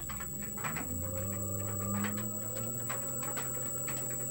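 Three-phase induction motor run from a variable frequency drive, its hum climbing a little in pitch as the speed is turned up with a potentiometer, then holding steady, with a constant high-pitched whine over it.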